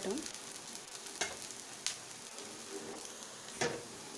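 Dosa batter sizzling steadily on a hot tawa, with three short clicks, the loudest near the end.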